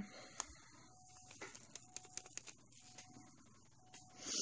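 Very faint patter and soft ticks of loose 1 mm purple hexagon nail-art glitter being tipped into a plastic bowl of glitter mix.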